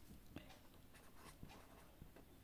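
Very faint scratching of a pen writing on paper, close to silence, with two light ticks, one early and one about one and a half seconds in.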